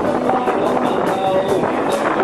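Male voice singing a Cantopop ballad into a microphone through a small busking amplifier, with an acoustic guitar strummed in a steady beat of about three strokes a second.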